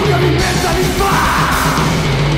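Thrash metal song playing: distorted electric guitars and drums with shouted vocals.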